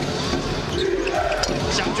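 Basketball being dribbled on a hardwood court, bouncing repeatedly.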